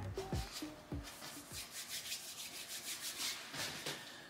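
Paintbrush bristles scrubbing and dabbing paint onto a stretched canvas in quick, repeated strokes. A few falling music notes die away about a second and a half in.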